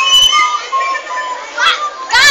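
Several young voices chattering and calling out over one another, with a rising shout near the end.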